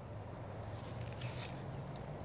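Birds at a rookery calling faintly: a short burst of high chatter a little past a second in, then two brief high chirps near the end, over a low steady rumble.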